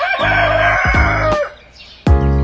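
A rooster crowing once, a raspy call about a second and a half long that falls away at the end, laid over music. The crow and the music break off together, leaving a short gap near the end.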